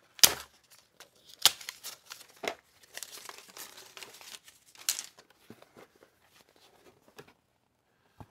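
Brown paper band being torn off a stack of cardboard game boards: a few sharp rips in the first five seconds with paper crinkling between them. The stiff cardboard boards rustle as they are handled.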